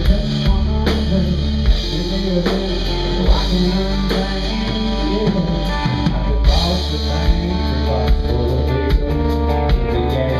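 Rock band playing live: electric guitars and bass over a drum kit keeping a steady beat, with cymbals ticking quickly near the end.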